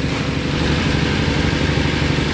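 Small single-cylinder horizontal diesel engine running steadily at idle, with a rapid, even chug.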